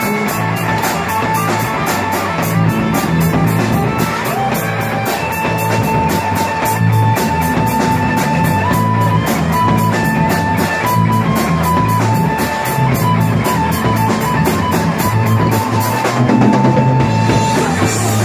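Rock band playing a fast instrumental passage: drum kit with rapid, even cymbal strokes over a moving bass line, and a held lead melody that steps from note to note. The cymbals drop out for a moment near the end.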